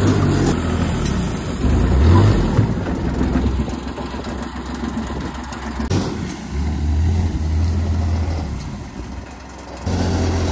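Kawasaki Mule utility vehicle's engine running as it drives off at low speed, the engine note rising about two seconds in and then holding steady.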